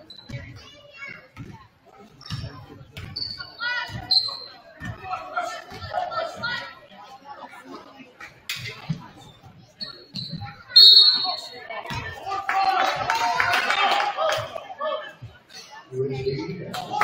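Basketball bouncing on a hardwood gym floor during play, with sneakers squeaking and players' voices echoing in the large gym. A sharp loud hit comes just before the eleventh second, followed by a couple of seconds of louder, overlapping shouting.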